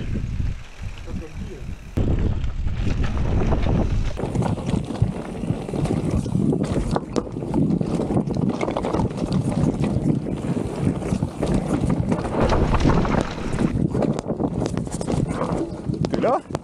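Enduro mountain bike, a Vitus Sommet 29, ridden fast down rocky singletrack: a constant rattle and clatter of tyres, suspension and chain over the stones, with wind buffeting the helmet camera's microphone. For the first two seconds it is quieter, then it suddenly gets louder when the ride is on the rough trail.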